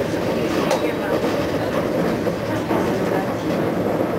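Konstal 105Na tram set running along the line, heard from inside the passenger car: a steady rumble of wheels on rail and running gear, with a brief sharp click about three-quarters of a second in.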